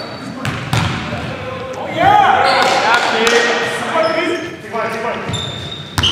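Live pickup-style basketball play in a large gym: a basketball bouncing on the hardwood floor, short sneaker squeaks, and players' voices calling out across the court, loudest about two seconds in.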